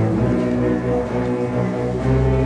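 High school orchestra playing, with bowed strings in held notes; a low sustained bass line from the cellos and double basses comes in at the start under the upper strings.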